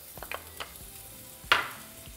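Sliced onion sizzling quietly in hot oil in a stainless steel skillet, with a few light clicks and one sharp knock about one and a half seconds in.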